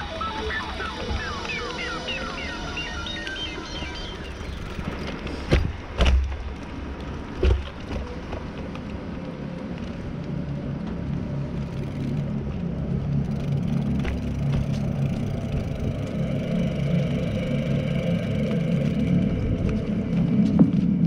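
Bicycle ride noise over paving stones and packed dirt: a steady rolling rumble that builds through the second half, with three sharp thumps about five to seven and a half seconds in as the wheels hit bumps. A run of short chirps sounds in the first few seconds.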